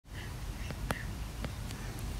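Faint background hiss and low hum with a few soft, short clicks scattered through it.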